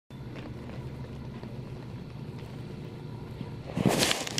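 A steady low hum, with a brief loud rustling burst just before the end.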